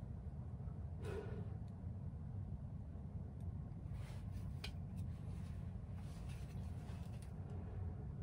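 Soft breaths blown into a handheld ball-in-tube wind meter: a brief puff about a second in and a few more around four to five seconds, over a low steady hum.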